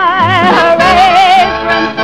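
Female vocalist singing long held notes with a wide vibrato, sliding down to a new note about half a second in, over a 1950s jazz band accompaniment in a blues song.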